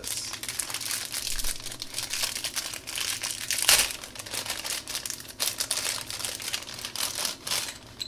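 Thin clear plastic wrapping crinkling and rustling in the hands as a capsule-toy figure is worked out of its sealed bag, with the loudest crackle a little before halfway through.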